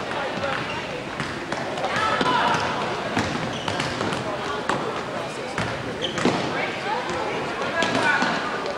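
Basketball bouncing on a hardwood gym floor, irregular knocks as it is dribbled and passed, over indistinct voices of players and spectators.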